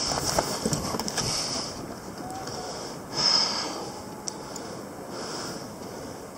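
Wind rushing over the microphone and water washing around a fishing kayak, with a few light clicks and rattles of gear in the first second and a louder gust-like rush about three seconds in.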